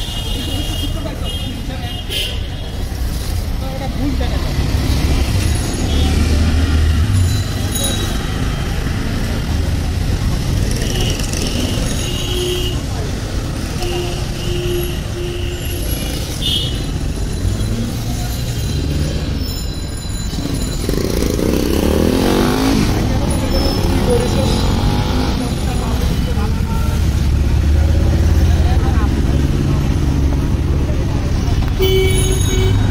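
Busy street ambience: a steady low traffic rumble with passing vehicles, short high tones that come and go, and people's voices in the background.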